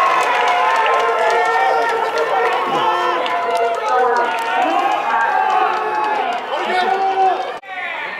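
Many voices shouting and calling out at once, overlapping, as at a baseball game. The sound breaks off sharply near the end, leaving fewer voices.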